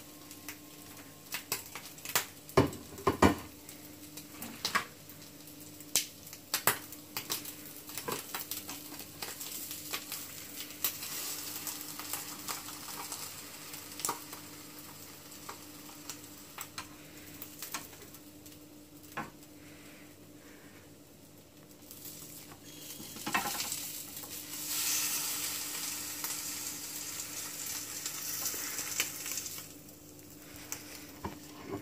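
Egg-dipped ham and cheese French toast frying in olive oil in a non-stick pan, sizzling, with repeated sharp clicks and clacks of metal tongs against the pan as the pieces are turned and lifted. The sizzle swells for several seconds near the end.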